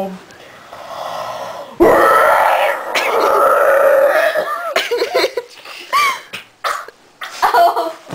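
A person making loud, rough retching and burp-like vocal noises in a comic imitation of a constipated tiger, starting about two seconds in, with a few short pitch swoops around the middle.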